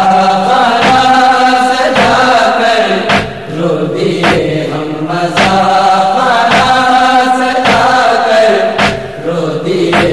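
Voices chanting a nohay, a Shia mourning lament, in long held notes. A sharp thump keeps the beat about once a second.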